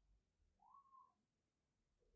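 Near silence, with only a very faint, brief chirp that rises and falls about half a second in.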